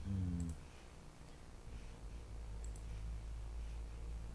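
Computer mouse clicking: a quick double click about half a second in and another a little before three seconds, over a low steady hum.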